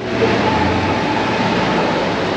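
A nearby road vehicle running, heard as a steady rushing noise with a faint high whine held throughout.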